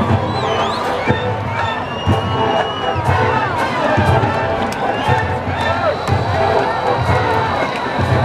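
Marching band brass and drums playing a funk number, with crowd noise and cheering from the stands mixed in.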